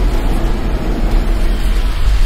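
Loud, steady low rumble under a dense wash of noise: film sound effects of a cargo ship heeling over, with crates sliding across its deck.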